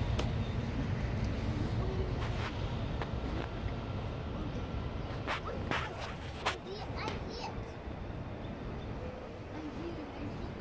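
A child's faint voice and a few sharp knocks over outdoor background noise, with a low rumble in the first couple of seconds.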